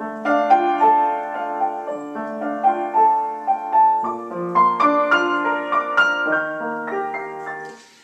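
Upright piano playing a melody over held chords, the notes dying away just before the end.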